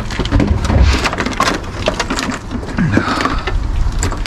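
Tangled cables and small plastic electronics rustling and clattering as they are dragged out of a bin of discarded gadgets: a busy run of small clicks and knocks over a low rumble.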